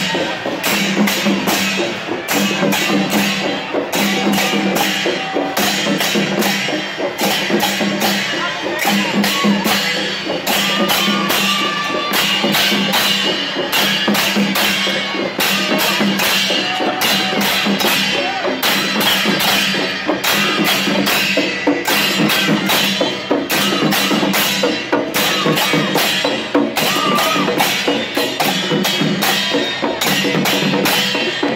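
Slung barrel drums and large brass hand cymbals played together in a loud, fast, steady rhythm.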